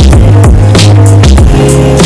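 Background electronic dance music with heavy bass and a steady beat of about two strokes a second.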